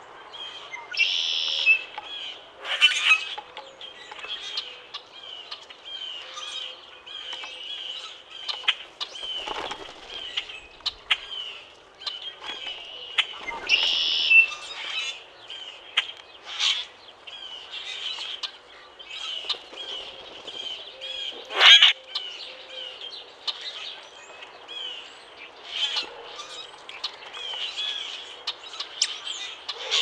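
Common grackles calling in a near-constant high chatter, with a few short, sharp rustles among the calls, the loudest about two-thirds of the way through.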